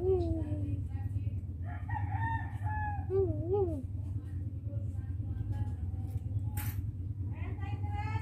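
A rooster crowing: one long call about two seconds in that ends in a wavering fall, and another call starting near the end, over a steady low hum.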